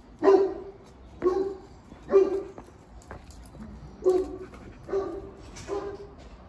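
A dog barking repeatedly, six barks about a second apart with a short pause midway.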